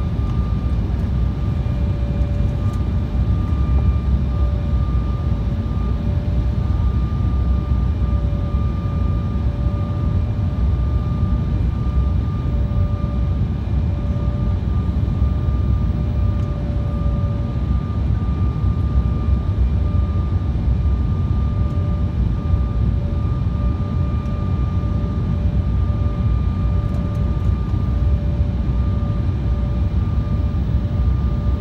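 Steady cabin noise inside an Embraer E-Jet airliner on approach with its flaps extended: a dense low rumble of engines and airflow, with a steady whine from the engines.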